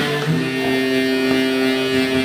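Live blues band with an amplified harmonica cupped against a microphone, holding one long chord that starts just after the beginning, over the band's accompaniment.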